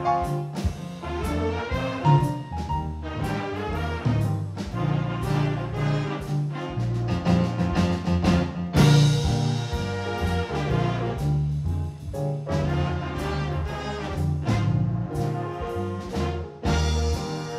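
High-school jazz big band (saxophones, trumpets, trombones, keyboard and drum kit) playing a B-flat blues, with a loud full-band accent about nine seconds in.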